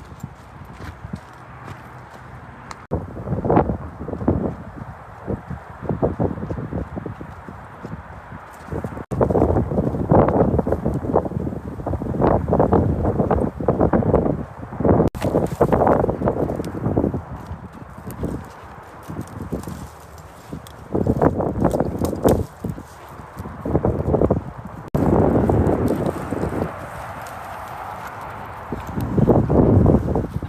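Footsteps hurrying along a dirt and gravel trail, a rhythmic crunching that comes in louder bursts with quieter stretches between and breaks off abruptly several times.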